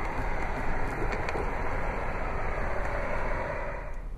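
Steady rushing noise inside the cabin of a 2014 Jeep Cherokee, even throughout with no distinct knocks or tones.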